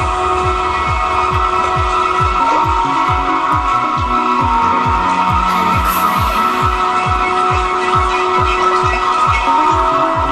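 Trance music from a DJ set: a steady four-on-the-floor kick drum, a little over two beats a second, under sustained synthesizer chords.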